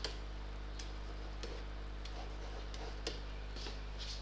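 A few faint, scattered clicks of a stylus tapping on a tablet as handwriting is put on the screen, over a steady low electrical hum.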